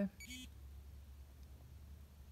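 Polar Grit X sports watch giving one short electronic beep as its training session is paused.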